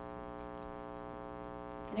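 Steady electrical mains hum with a buzzy edge: one low droning tone with many overtones that does not change.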